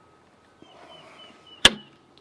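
A single sharp metallic click about one and a half seconds in: a metal latch on a cabinet panel being snapped open or shut by hand.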